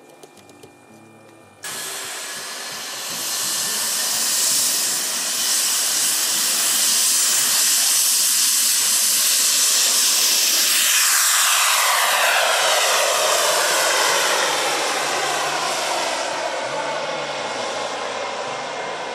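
Twin model turbine jet engines of a 1/16-scale Airbus A330-300 RC airliner at takeoff power: a loud, high hissing whine that comes in abruptly about two seconds in and builds, with its pitch falling as the jet passes by at about eleven seconds in.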